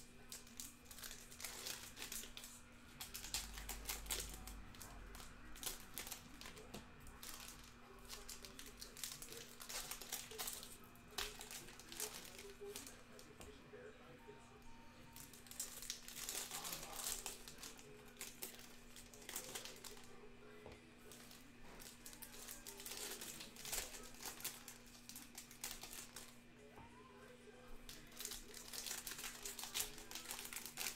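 Card-pack wrappers of 2013-14 Upper Deck SP Authentic basketball packs being torn open and handled, giving irregular crinkling and tearing rustles all through.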